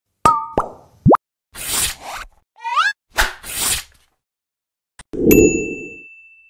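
Animated logo-intro sound effects: two quick pops, a fast rising zip, whooshes and a rising chirp, then a hit about five seconds in followed by a high ringing ding.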